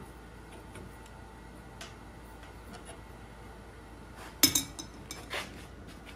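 Adjustable steel wrench clanking against steel: one sharp metallic clank about four and a half seconds in, then a few lighter clinks, as the wrench comes off a hot twisted bar held in a vise. Before that only a few faint ticks.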